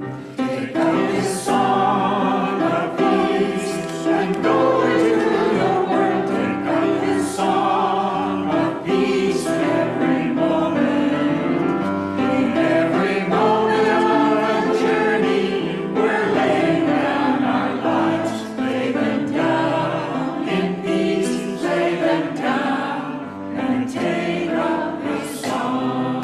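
Church congregation singing a hymn together, a sustained melodic line of many voices.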